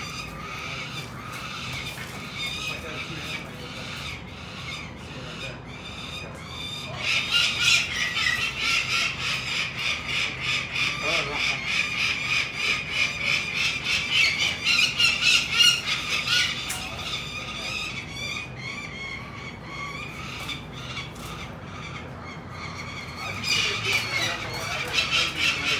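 Peregrine falcon calling in a fast, harsh, repeated series, about three or four calls a second, loudest from about seven to sixteen seconds in. This is the alarm call peregrines give when people are at their nest.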